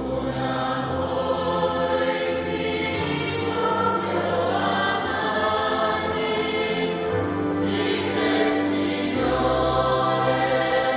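Church choir singing a slow liturgical hymn, with sustained low accompanying notes underneath.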